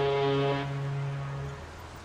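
Ship's horn blast: a deep, steady, several-toned horn sounding loudest at the start, its low note holding until about a second and a half in, then dying away.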